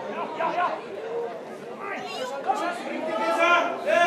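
Several voices of spectators and players talking and calling out over one another at a football match, with one loud, drawn-out shout near the end.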